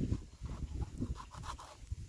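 Knife blade scraping scales off a whole fish in a plastic bowl, a series of short strokes, over a low rumble.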